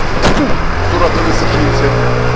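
Small 50cc scooter engine running steadily at low speed, heard with wind and road noise on the rider's camera microphone, with one brief sharp knock about a quarter second in.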